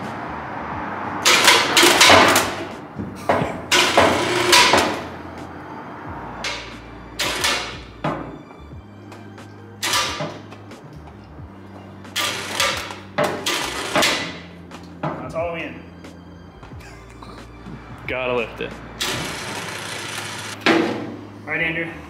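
Electric chain hoist on a gantry crane lifting a heavy vertical bandsaw, with repeated loud metallic clanks and rattles as the chain and load shift. A steady low motor hum runs through the middle stretch.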